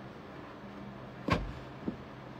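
A sharp knock a little over a second in, then a lighter thump about half a second later, over a low steady hum.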